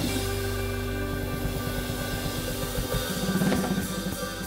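Live band playing an instrumental passage: electric guitars, electric bass and a drum kit keeping a steady beat, with a sharp accent right at the start.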